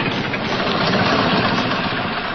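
A truck engine running steadily as the truck pulls up, a sound effect from an animated film's soundtrack.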